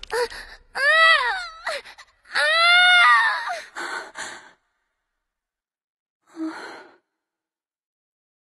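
A high-pitched voice giving two drawn-out wordless cries, each rising and then falling in pitch, followed by a pause and a short breath near the end.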